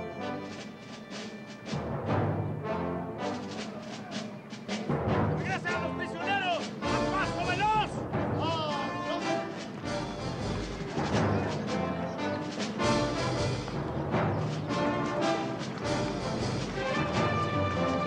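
Orchestral film score, loud and dense, with timpani and brass, swelling deeper from about seven seconds in.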